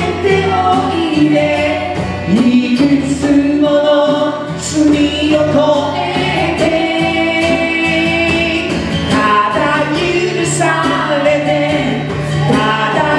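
A live band playing a song, with a male and a female vocalist singing into microphones over acoustic guitar and a hand drum keeping a steady beat.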